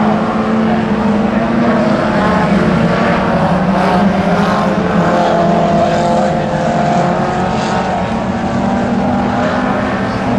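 A pack of junior sedan race cars lapping a speedway oval together, their engines running in a steady, loud drone of several overlapping engine notes.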